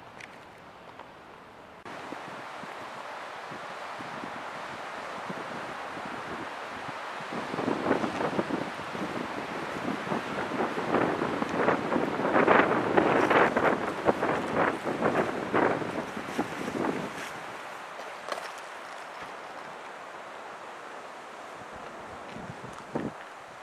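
Wind buffeting the microphone: a steady rush that steps up about two seconds in, swells into loud, ragged gusts through the middle, then eases back to a steady rush.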